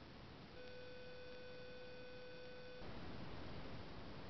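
A steady, level tone that starts abruptly, holds for a little over two seconds and cuts off suddenly, over faint steady hiss.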